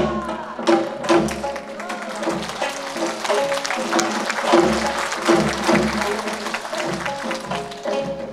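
Two gayageums, Korean plucked zithers, played together in a quick, busy passage of plucked notes that ring on.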